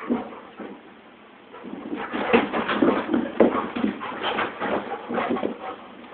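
Vizsla dog romping on a bed and carpet: after a short lull, about two seconds in, a run of irregular soft thumps and scuffles from its paws and body.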